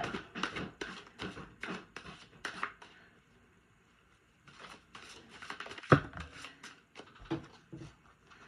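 A tarot deck being shuffled by hand: a run of quick papery flicks and slaps of cards. It pauses for about a second and a half midway, then resumes, with one sharper slap about six seconds in.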